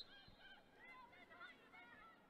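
Near silence with faint, short calls from a flock of birds, many of them overlapping.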